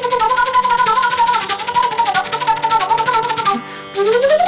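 Chitravenu slide flute playing a fast tanam-style run in raga Shankarabharanam, its notes cut rapidly by tonguing while the slide moves. The pitch steps quickly up and down within a narrow range, and the run stops shortly before the end.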